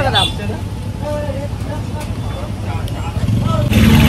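A motor vehicle engine running close by, its low rumble growing suddenly louder near the end, under faint background voices.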